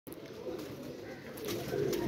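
Domestic pigeons cooing, low and fairly faint, growing a little louder toward the end.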